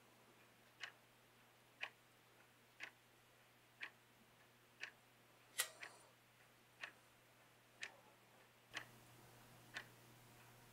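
A clock ticking quietly, one sharp tick a second, with one slightly sharper click a little past halfway.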